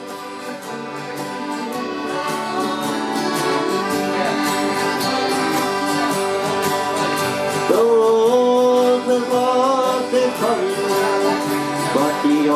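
Acoustic guitars strumming an old country tune, fading in at the start. About eight seconds in, a louder sliding melody line joins over the chords.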